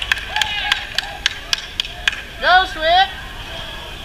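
Hand claps from players on the touchline, a string of single claps at an uneven pace, mixed with shouts of encouragement; two loud rising shouts stand out about two and a half seconds in.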